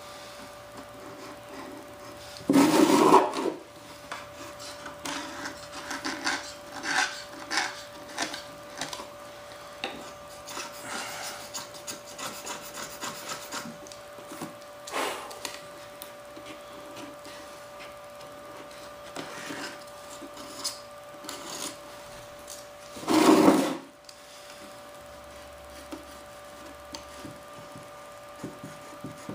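Hand scraping and rubbing on a mold and its molded fuselage part, in short irregular strokes, with two louder rough bursts of about a second each: one near the start and one about three quarters of the way through.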